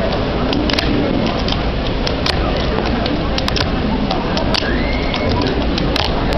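A fingerboard clicking and clacking sharply on a cardboard surface as tricks are tried, a dozen or so separate taps. Under them runs a steady loud background hiss with faint voices.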